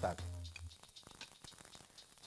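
Precooked sweet corn kernels frying in oil in a hot pan, a faint crackling sizzle.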